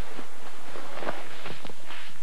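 Quick, uneven footsteps of a person hurrying, about half a dozen short strikes over a steady background noise.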